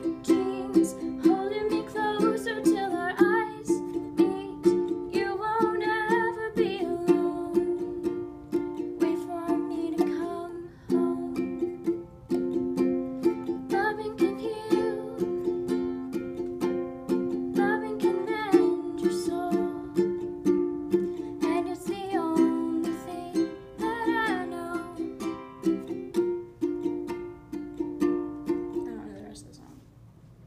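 Ukulele strummed in a steady rhythm, chords ringing, with a woman's voice singing over it in phrases. The playing stops about a second before the end.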